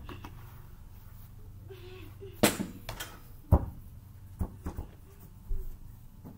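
A basketball thudding several times at uneven intervals, heard from a distance, with the loudest thud about two and a half seconds in.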